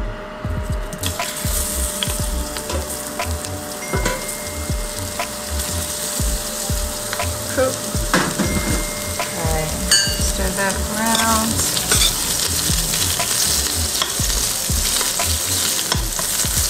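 Sliced onions sizzling in hot olive oil in a stainless steel stockpot at medium-high heat; the sizzle builds about a second in as they hit the oil and then holds steady. Occasional light knocks as they are stirred.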